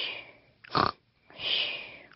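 A cartoon piglet snoring in his sleep. A short snort comes a little under a second in, between breathy, hissing breaths.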